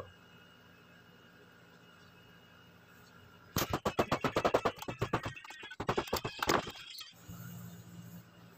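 Rapid clicking and rattling of small metal parts, screws and screwdriver handled while the washing machine's spin motor is unscrewed. It comes after about three and a half seconds of near quiet, lasts about three seconds, and is followed by a faint low hum.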